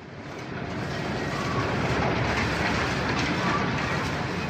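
A dense mechanical rumble and clatter that swells up over the first second and then holds steady.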